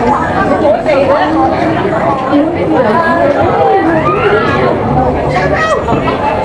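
Crowd chatter: many voices talking at once and overlapping, steady throughout.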